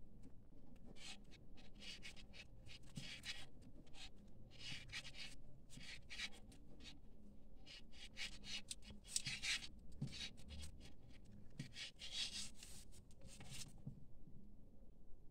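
Paper yarn rustling and scratching as a crochet hook is pulled through single crochet stitches, in short irregular strokes with brief pauses between them.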